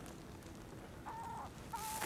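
Two faint short bird calls, one about a second in and a shorter one near the end.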